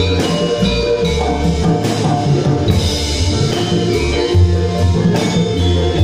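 Live campursari band playing an instrumental passage: Javanese kendang hand drums and a keyboard with gamelan percussion over a steady beat and heavy bass.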